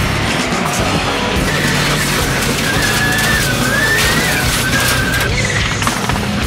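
Music soundtrack over the engine and tyre noise of rallycross cars racing.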